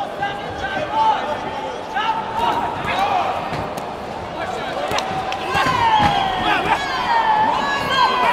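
Shouting voices of coaches and spectators echoing in a large sports hall, with a few sharp smacks of kickboxing blows landing in the ring. The shouting grows louder after about five seconds.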